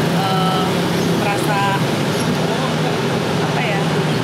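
Indistinct voices over steady background noise with a constant low hum.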